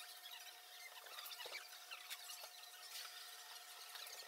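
Faint background ambience: a steady faint hum with many small scattered ticks.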